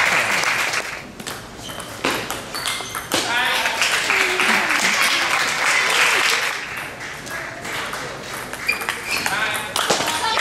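Spectators' voices and murmur between points of a table tennis match, with a few sharp taps of the celluloid ball.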